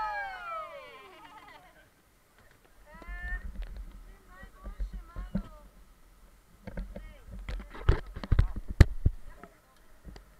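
Rafters' voices calling out without words: a long falling yell at the start and short calls about three seconds in. This is followed by a run of sharp knocks and thumps in the second half.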